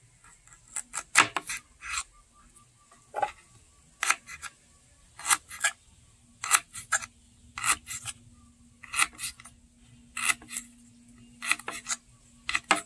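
Knife slicing fresh ginger on a wooden cutting board: crisp cutting strokes ending on the board, in small groups of two or three, roughly one group every second and a quarter.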